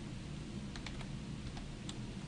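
Computer keyboard being typed on: a few separate keystroke clicks over a steady low background hum.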